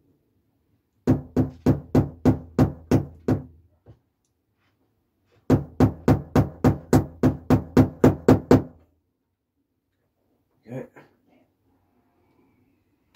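Small hammer tapping a nail into a model railway baseboard: two runs of quick, even taps, about three a second, with a pause of about two seconds between them.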